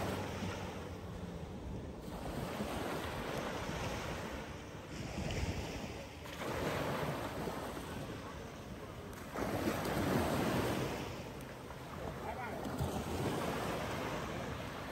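Sea waves washing onto a beach, swelling in surges every three to four seconds, with wind buffeting the microphone.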